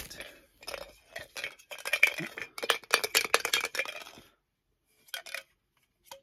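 Funko Soda collectible can being opened and handled: a quick run of plastic crinkles and clicks from the packaging, stopping about four seconds in, with a short burst again near the end.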